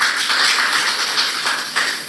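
Audience applause: dense, steady clapping that tails off near the end.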